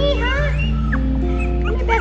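Young Havapoo puppies whimpering and yipping in short, high, curving cries, over background music with long held notes.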